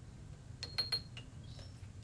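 Light metallic clinks, three close together about half a second in, as a lathe chuck is loosened with its chuck key and a drilled steel bar is taken out of the jaws.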